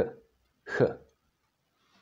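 A man's voice pronouncing the Czech 'ch' sound once, about a second in: a short, rasping friction at the back of the throat, the voiceless velar fricative heard in Scottish 'loch'.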